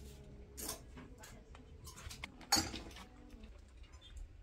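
Indoor shop background with a low hum and a few sharp knocks and clatters of handled goods, the loudest about two and a half seconds in.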